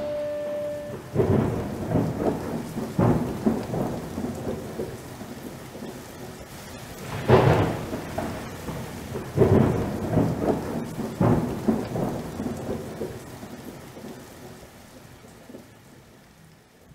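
The song's last chord rings out and stops about a second in, then thunder rumbles over steady rain in several rolls, the loudest about seven seconds in, all fading away toward the end.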